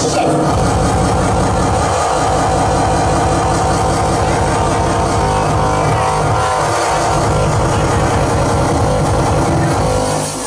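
Loud dance music mixed by a DJ on laptop software and played over a club sound system, with a heavy, steady bass beat.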